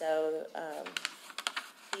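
A run of quick key clicks from typing on a laptop keyboard, about a second in.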